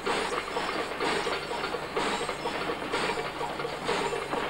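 Train rolling along, its wheels clacking over the rail joints about once a second over a steady rumble.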